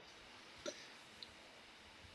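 Near silence, broken by one faint, short sound from a person's mouth or throat a little under a second in, and a faint tick a little later.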